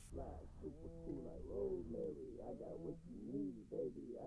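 A soloed male vocal track from a hip-hop mix playing back faintly on its own, without the beat, with held syllables that rise and fall in pitch.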